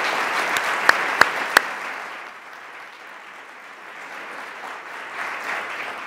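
Audience applauding, full for about two seconds and then dying away, with a slight swell again near the end. Three sharp, louder claps stand out about a second in.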